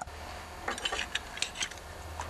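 A few light clicks and taps of metal small-engine parts being handled as the points cover is fitted over the crankshaft, over a steady low hum.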